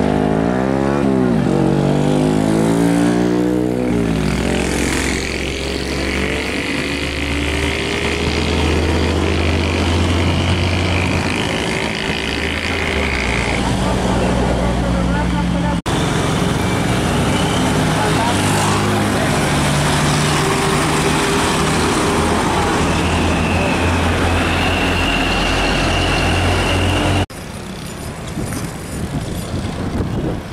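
Heavy diesel trucks pulling loaded trailers driving by one after another, a Hino 500 first and then an older Mitsubishi Fuso, their engines rumbling under load with the pitch rising and falling in the first few seconds. The sound changes abruptly twice as one truck gives way to the next.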